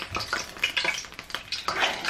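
Metal spoon stirring and scraping wet fritter batter of flour, water and saltfish in a stainless steel saucepan: irregular clinks and scrapes against the pot.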